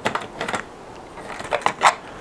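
Sharp plastic clicks and knocks as a 3D-printed vertical-axis wind turbine rotor is handled and unclipped from its plastic cradle. A few clicks at the start, more around half a second in, and a quick run of them near the end.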